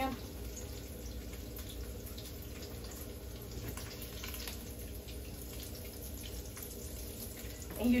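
Bacon sizzling steadily in a frying pan, with a few faint clicks of a spatula against the pan.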